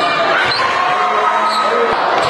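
Live basketball game sound in a gym: a ball bouncing on the hardwood and sneakers squeaking in thin high sliding tones, with voices echoing around the hall.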